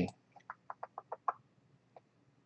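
A quick run of about seven short, soft clicks in the first second or so, like a computer mouse being clicked repeatedly, then one faint click near the end.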